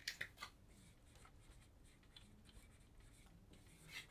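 Marker pen writing on a whiteboard: faint short scratching strokes, slightly louder in the first half-second.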